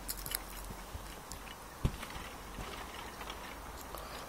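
Soft knocks from a backyard trampoline as people move and bounce on it, with one louder dull thud about two seconds in.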